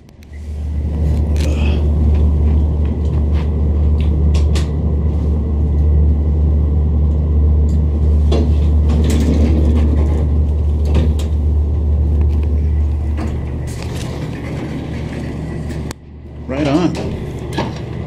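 Vintage Otis traction elevator car travelling: a steady low rumble with occasional clicks, easing off about three-quarters of the way through and stopping suddenly near the end as the car levels at a floor.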